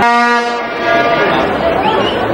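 A horn blown in a stadium crowd: one blast on a single low note, starting suddenly and strongest for about half a second before fading, over the chatter of the crowd.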